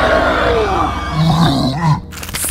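Film sound-effect roar of a giant gorilla, loud, with its pitch sliding down through the first second, then a lower, wavering growl in the second half.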